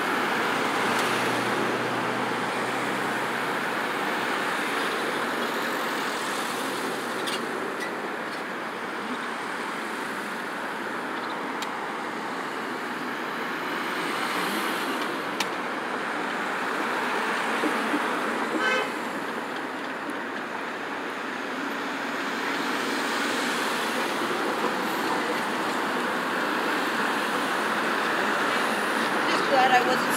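Road traffic passing through a busy intersection: a steady wash of car and SUV engine and tyre noise that swells and fades as vehicles go by, with one brief sharp sound a little past the middle.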